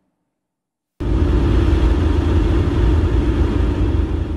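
Loud, steady, low rumbling noise with a hiss above it, like street traffic, starting abruptly about a second in after a moment of silence.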